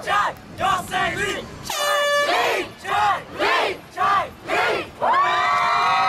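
A crowd of supporters chanting a two-syllable name in rhythm, about two syllables a second. A horn honks once, briefly, about two seconds in. About five seconds in the chant breaks into a long, sustained cheer.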